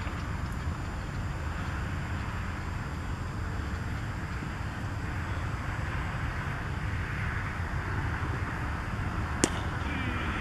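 Steady outdoor background rumble and hiss, with a single sharp knock near the end.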